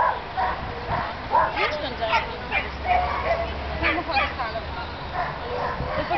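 Dog yipping and barking in short, repeated calls, with people's voices in the background.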